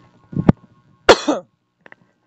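A man coughs twice, the second cough louder.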